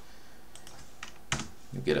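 Computer keyboard keys clicking: a few faint key presses, then one sharper, louder click a little over a second in.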